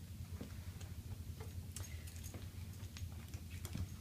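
A few faint, scattered clicks of cable connectors and plastic being handled as a cardiac output cable is plugged into a patient-monitor module, over a steady low room hum.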